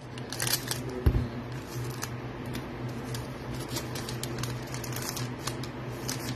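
Foil wrapper of a football trading-card pack being torn open and crinkled by hand, an irregular run of crackles and small clicks, with the cards sliding out; one soft thump about a second in, over a steady low hum.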